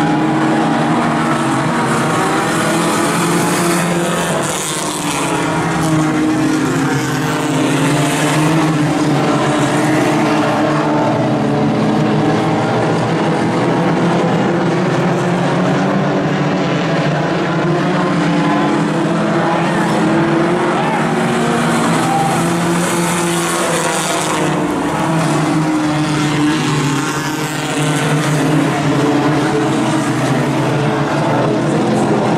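Several compact tuner-class race cars running in a pack on a dirt oval, their engines revving up and down together as they lap.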